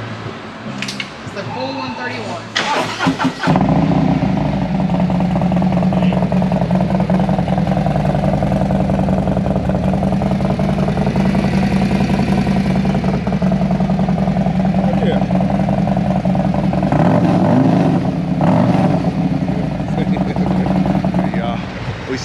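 Harley-Davidson touring motorcycle's Screamin' Eagle 131 Stage IV V-twin starting up about three seconds in, then idling loud and steady through its stainless exhaust.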